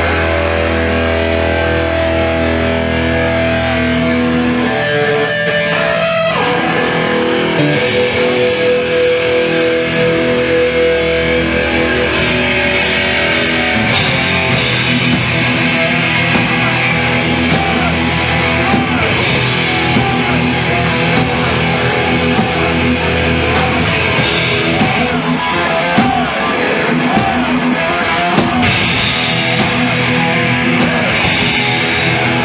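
Thrash metal band playing live with distorted electric guitars. The opening chords are held and ringing, then fast cymbal-heavy drumming joins about twelve seconds in.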